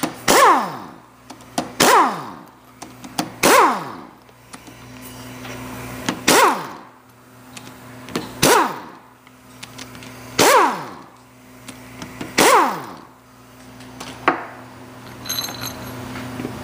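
Cordless drill/driver with a hex bit spinning out the gear pump's end-cap socket-head screws, in about seven short bursts roughly two seconds apart. Each burst ends in a falling whine as the motor winds down after the trigger is released. A few light metal clicks follow near the end.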